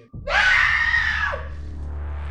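A single loud, high-pitched scream of distress lasting just over a second, rising at the start and falling away at the end, over a low steady music drone.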